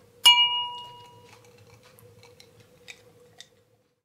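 A glass ding: one bright strike that rings out for about a second over a faint steady hum, followed by a couple of faint clicks.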